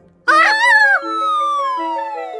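Cartoon sound effects: a short squeaky high-pitched cry that rises and falls, followed by a long whistle gliding steadily downward, over held background music notes.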